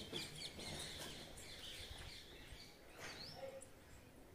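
Faint chirping of small birds: a quick run of short high chirps at the start and a single rising chirp near the end.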